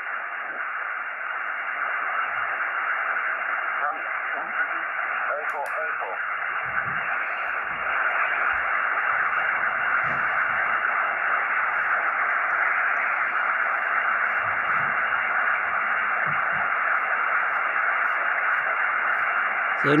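Steady hiss of band noise from a Xiegu X6100 HF transceiver receiving upper sideband on the 20-metre band, cut off sharply above about 3 kHz by the receive filter, as the set is tuned slowly across the band. The noise is high and the band has few usable signals: the indoor end-fed wire antenna is picking up a lot of noise, "not great".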